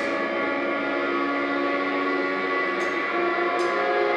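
Live shoegaze rock band holding a sustained electric guitar and bass chord that rings on as a steady drone while the drums drop out. Two light cymbal ticks come near the end.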